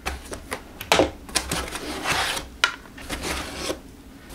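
Parts of an electric rug tufting gun and its cable being handled in a cardboard box's foam packing: irregular sharp clicks and knocks of hard pieces, with rubbing and rustling of the foam insert about halfway through.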